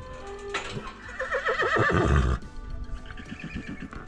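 A horse whinnying: a loud call of repeated falling pitch strokes starting about half a second in and lasting about two seconds, then a quieter, lower pulsing call near the end.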